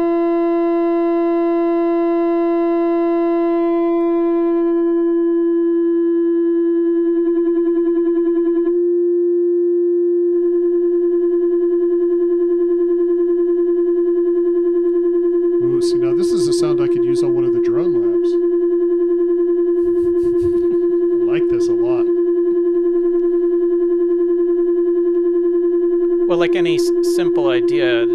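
Modular synthesizer oscillator holding one steady pitch while its overtones fade away over the first several seconds, leaving a smooth, nearly pure sine-like tone. Brief noises come in about two-thirds of the way through.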